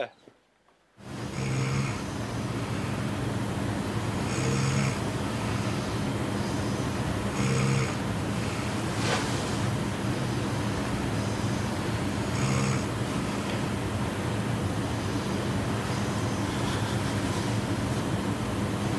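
A sleeping person snoring, one snore every few seconds, over a steady hiss that starts about a second in.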